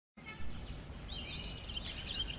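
Birds chirping faintly over a low, steady background rumble; the chirping starts just over a second in.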